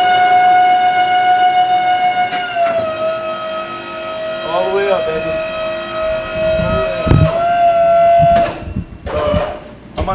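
Electric hydraulic lift of a Crown order picker whining steadily as it raises the operator platform up the mast. The pitch dips slightly about a quarter of the way in, and the whine cuts off sharply near the end as the platform reaches the top.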